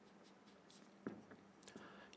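Faint strokes of a marker pen writing on a whiteboard: a few short, quiet scratches, the clearest about halfway through.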